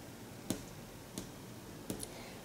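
Quiet room tone with three faint, short clicks, evenly spaced about two-thirds of a second apart like a softly kept beat.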